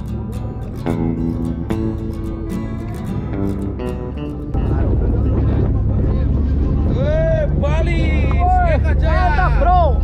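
Guitar music, then about four and a half seconds in a steady rumble of the fast ferry underway at sea takes over, with high voices calling out in rising and falling tones over it.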